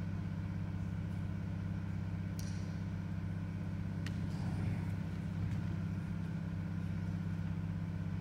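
Steady low hum in the hall's sound pick-up, with a couple of faint ticks about two and four seconds in.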